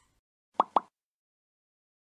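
Two quick cartoon 'plop' pop sound effects from a logo animation, about a fifth of a second apart, a little over half a second in.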